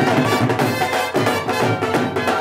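Dhol drums beating a fast, steady rhythm, with a saxophone playing a melody over them: live bhangra music for an entrance.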